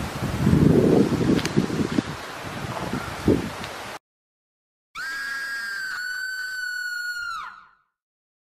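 Rumbling handling and wind noise on a handheld camera microphone, with a couple of light knocks. After a cut to a second of dead silence, a single held electronic tone, a sound effect added in editing, sounds for about two and a half seconds and bends down in pitch as it fades out.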